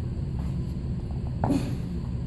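Steady low room hum, with one brief sound about one and a half seconds in as a person jumps back from a seated lift on yoga blocks and lands in a low plank.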